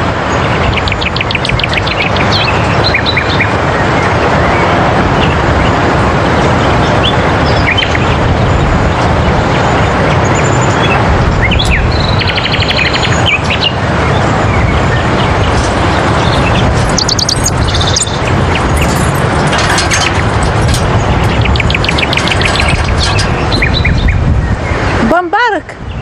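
Steady, loud rush of wind and sea surf with small birds chirping in short repeated bursts over it.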